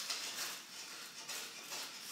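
Pencil scratching across lined notepad paper in a series of short strokes as it draws a line.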